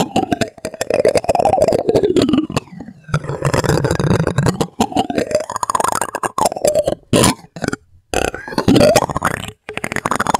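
A plastic spoon is rubbed and scraped close up, making a busy run of scratchy strokes and sliding squeaks. There are short breaks about seven to eight seconds in and near the end.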